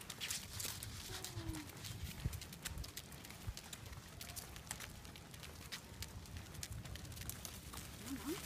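People and a corgi walking on a paved path: irregular light clicks and scuffs of footsteps and the dog's claws on the pavement.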